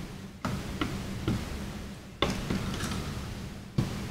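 A handful of light clicks and knocks as an EVGA GTX 970 graphics card's cooler is pressed down and seated onto the card by hand, the sharpest click about two seconds in.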